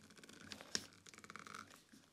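Faint scraping and small clicks of a knife blade prying at the sawn-open plastic casing of a Ford Focus Mk2 windscreen washer pump, with one sharper click a little under a second in.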